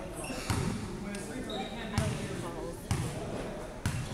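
Basketball bounced on a hardwood gym floor four times, about once a second, as the free-throw shooter dribbles before the shot. Voices are faint in the background.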